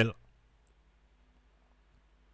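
A man's speech cuts off at the start, then near silence: faint room tone with a low, steady hum.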